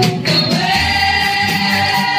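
Praise and worship singing: a woman leading into a microphone with the congregation singing along. After a brief break she glides up into one long held note.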